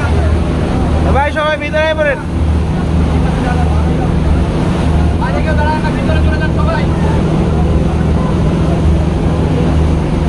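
A passenger launch's engines running with a steady low throb, under storm wind buffeting the microphone and rough water rushing past the hull. People's voices rise briefly twice, near the start and in the middle.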